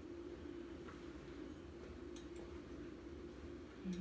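Quiet room tone with a steady low hum, and a few faint ticks from handling a rhinestone ornament against a glass jar.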